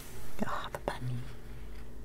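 A hand sliding across the paper page of a coloring book: a short, loud rustle of paper in the first half-second, followed by a couple of light taps.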